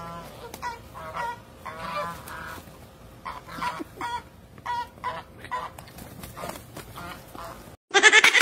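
Goose honking over and over in short calls as it fights off a dog. The calls come thick for about six seconds, then thin out, and the sound cuts off abruptly just before the end.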